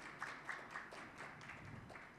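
Faint, sparse applause from a small audience, a few hands clapping unevenly and dying away near the end.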